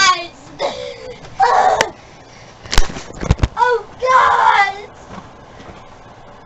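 Children's voices in short shouts and calls, with a few sharp knocks and a dull thump about three seconds in.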